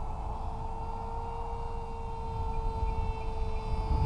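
Electric motor and propeller of a HobbyKing Sonic FX RC flying wing, running on a 3-cell battery, giving a steady whine as it flies past. Wind rumbles on the microphone underneath.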